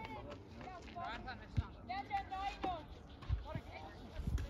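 Distant shouts of footballers calling to each other across the pitch, in short bursts about one and two seconds in, with a few low thumps.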